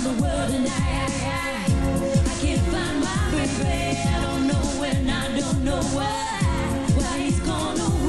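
Live pop-soul performance: a woman sings lead into a microphone over a band with a steady, pulsing dance beat.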